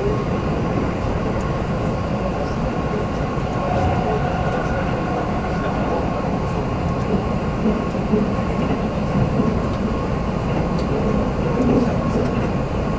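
Keihan Main Line electric train running at speed, heard from inside the passenger car: a steady rumble of wheels on rail and running noise, with a faint steady whine over it.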